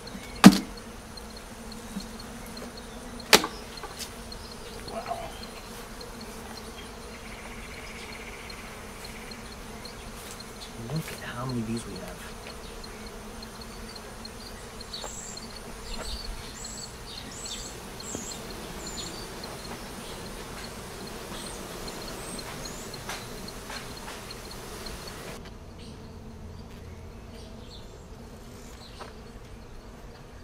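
Honeybees buzzing around an open hive, a steady hum. A sharp knock about half a second in is the loudest sound, and a second one comes about three seconds in.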